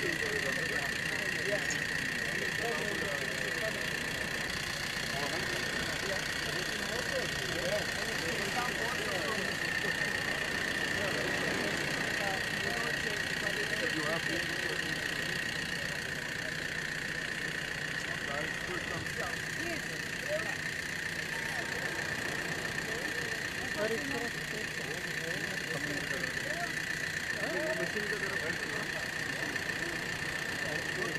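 Jeep-mounted mobile water filtration unit running steadily, a constant machine hum with a high-pitched whine, under the murmur of many voices.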